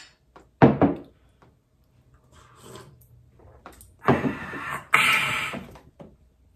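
Two ceramic mugs clinked together in a toast, a couple of sharp knocks a little over half a second in. About four seconds in, two rough, scraping rustles as the cardboard box of a gingerbread house kit is pulled open.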